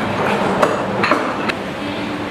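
Three sharp knocks on a tabletop, about half a second apart, the first the loudest, heard over the steady murmur of a café.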